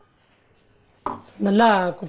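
Kitchen sounds: a short knock about a second in, then a person's voice held briefly, the loudest sound here.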